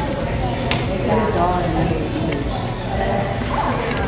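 Restaurant room noise with low, murmured voices and one brief clink about two-thirds of a second in.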